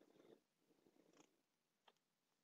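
Near silence, with faint low noises in uneven spells over the first second or so and one soft click just before the end.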